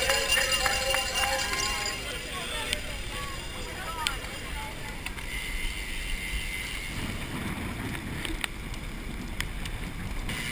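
Several voices for the first couple of seconds, then rushing wind on an action camera's microphone while cycling, which grows louder from about seven seconds in.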